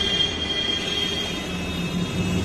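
A machine running with a steady high-pitched whine over a low hum.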